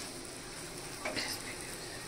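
Quiet, steady sizzle of a folded roti quesadilla heating in butter on an iron tawa over a low gas flame. About a second in there is a soft scrape of the wooden spatula.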